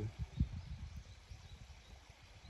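Quiet outdoor background with a low rumble and a couple of soft low knocks near the start, typical of a hand-held microphone outdoors.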